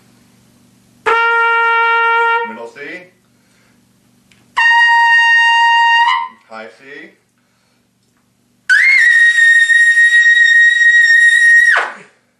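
Trumpet played on a Bach 10.5C mouthpiece: three held notes, each an octave above the last, climbing through third-space C and high C to a double C. The double C is the loudest, held about three seconds with a slight scoop up at the start and a quick fall-off at the end.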